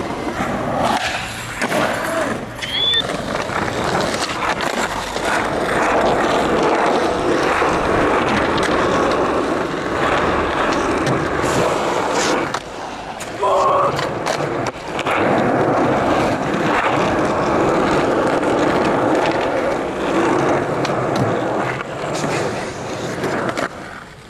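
Skateboard wheels rolling over pavement, broken by sharp clacks of the board popping and landing, across several clips cut one after another.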